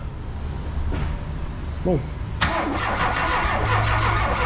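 A Ford car engine cranked by its starter motor, beginning suddenly a little past halfway through, on its first start after a cylinder-head job. It is not yet catching: the fuel pump still has to build pressure after the injectors were taken out.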